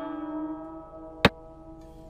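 A single sharp click from a xiangqi game program's piece-move sound effect, about a second in, over plucked-string background music with a slowly fading note.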